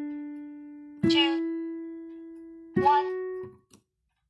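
Piano playing the D major scale slowly with the right hand, one held note at a time, each fading as it rings: the D is still sounding, then E comes in about a second in and F sharp about a second and a half later. The F sharp is released and stops short near the end.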